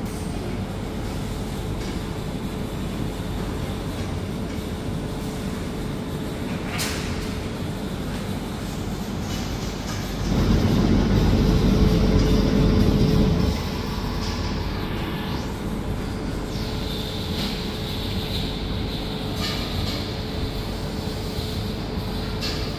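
Robotic boba tea machine at work: a steady mechanical hum with a faint constant tone, and a louder low whirring for about three seconds near the middle.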